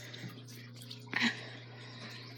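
Quiet room tone with a steady low hum, broken once, just over a second in, by a brief short sound.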